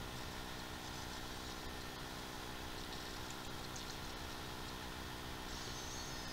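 Steady low hum with faint hiss, the background noise of a recitation recording between phrases, with a faint high wavering whine near the end.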